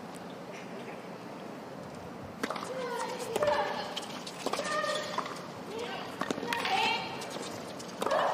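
Tennis doubles rally: sharp racket strikes and ball bounces start about two and a half seconds in and repeat through the rest, with short shouts between the shots over a steady crowd hum.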